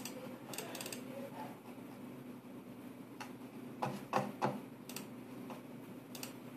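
Scattered light computer clicks: a pair near the start and a quick run of four or five around four seconds in, over a faint steady hum.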